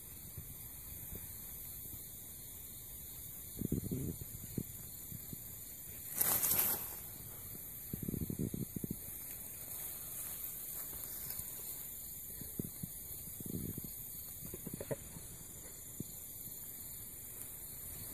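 Faint rustling in grass as a nine-banded armadillo roots and shuffles about, coming in a few short bursts over a steady hiss, with one louder brief rush of noise about six seconds in.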